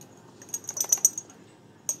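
A quick run of light clicks and taps about half a second in, then one more click near the end. It is a scoop working baking soda out of its box and tapping it off.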